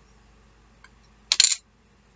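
A short clatter of small hard plastic pieces, a mini ink pad case and its lid, set down on the desk about a second and a half in, after a faint click.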